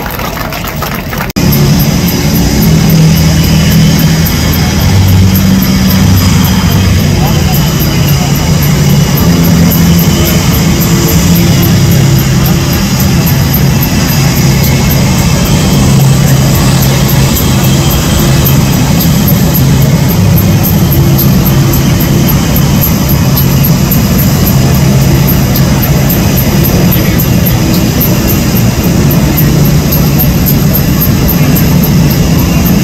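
Blue Angels F/A-18 Super Hornet jet engines running on the ramp: a loud, steady jet whine over a low rumble. It comes in suddenly about a second and a half in.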